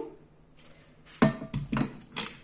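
A black plastic detachable saucepan handle being handled and fitted to a metal saucepan: a sharp knock about a second in, then a few quicker knocks and clicks.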